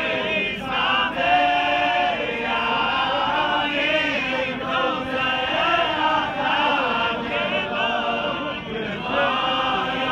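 A crowd of men singing together without instruments, many voices overlapping in a slow chant-like song, with one note held for about a second early on.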